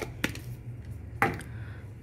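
A few light clicks and knocks as a metal matcha tin is handled and set down on the counter, over a low steady hum.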